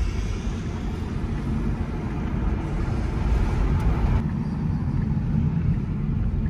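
Road and tyre noise inside an electric car's cabin as it drives at low speed: a steady low rumble with no engine sound.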